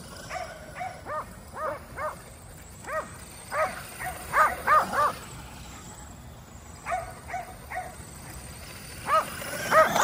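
Kerry Blue Terriers barking in short, high-pitched barks while chasing a radio-controlled truck, in clusters with a lull of a couple of seconds past the middle and a fresh burst near the end.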